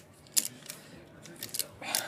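Ratchet strap's metal ratchet buckle being worked, one sharp click a little under half a second in, then a few faint clicks.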